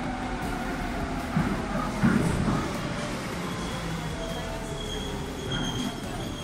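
Marmaray commuter train pulling into an underground station: a steady rumble of wheels on the rails, with a thin high squeal joining about halfway through as it slows alongside the platform.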